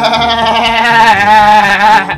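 A man imitating a goat's bleat with his own voice: one long, loud, wavering call that breaks off abruptly at the end.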